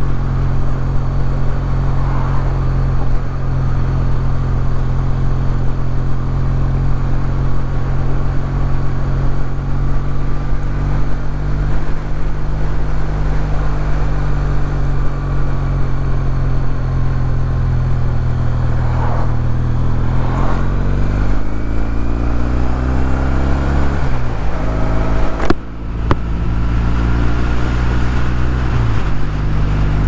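Kawasaki W800's air-cooled parallel-twin engine running steadily under way, heard from the rider's seat. About twenty seconds in, the engine note rises as the bike accelerates, drops off abruptly for a moment, then settles back to a steady note.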